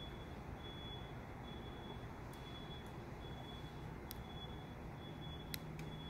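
Quiet outdoor background: a faint steady low rumble with a thin high tone and a few faint clicks. The remote-start press does not start the car, because it was not locked first.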